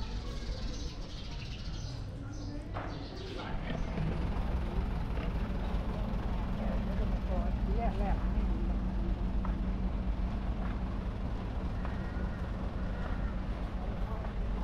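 Outdoor ambience with people talking in the background. From about four seconds in, a steady low hum of a vehicle engine running at idle sets in and continues under the voices.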